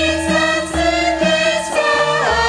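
A group of Javanese sinden (female singers) singing together in long held notes, over gamelan accompaniment with low, regular drum or gong strokes.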